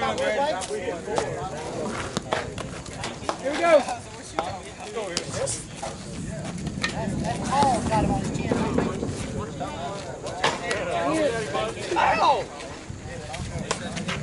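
Several people talking and calling out indistinctly, with a few short sharp knocks in among the voices.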